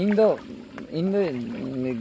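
Speech: a person's voice calling out in long, drawn-out syllables that rise and fall in pitch.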